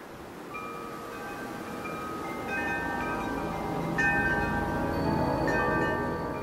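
Soundtrack music of chimes: bell-like notes come in one after another and ring on, layering and slowly growing louder.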